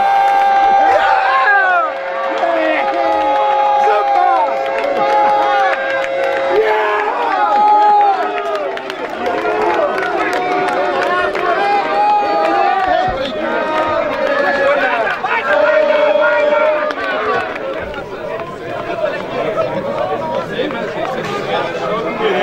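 A crowd of football spectators cheering and shouting to celebrate a goal, many voices overlapping. A long steady tone is held over the voices for about the first six and a half seconds.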